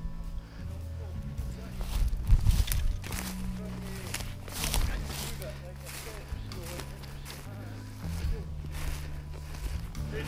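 Footsteps pushing through low forest undergrowth while walking with a handheld camera, irregular crunches and knocks over a low rumble on the microphone.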